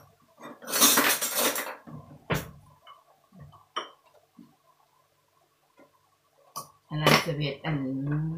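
Kitchen utensils and containers being handled: a short noisy scrape about a second in, then a few sharp clinks and clicks spread over the next several seconds as seasoning is spooned out for the wok of noodles. A voice starts near the end.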